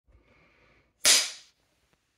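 A film clapperboard snapped shut once: a single sharp clap about a second in, dying away within half a second.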